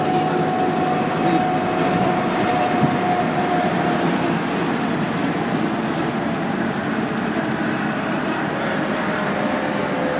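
Steady running noise heard inside a city transit bus at highway speed: engine and road drone, with a faint whine that slowly drifts down in pitch.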